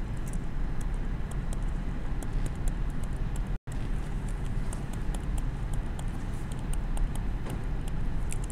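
Steady low room rumble with light, irregular clicks of a stylus tapping on a tablet screen as an equation is handwritten. The sound cuts out for an instant about three and a half seconds in.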